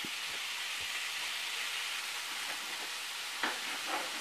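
Spinach and minced garlic sautéing in coconut oil in a skillet: a steady sizzle, with a few faint knocks.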